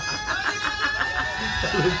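A young man's long drawn-out cheering shout of "yeah", one held high note for about two seconds.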